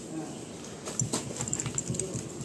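A cloth rubbed in quick strokes over a car's painted door panel, buffing at a scratch; the strokes come thicker from about a second in.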